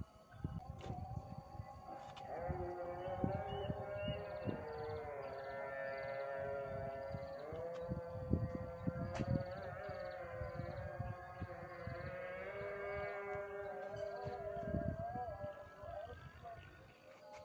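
Long held, slightly wavering tones, several seconds each, stepping between a few pitches, over irregular low rumbling buffets of wind on the microphone.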